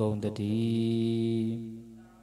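A Buddhist monk's voice chanting into a microphone, holding one long note that fades out near the end.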